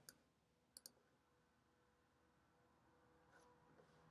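Near silence: faint room tone with two soft computer-mouse clicks in the first second.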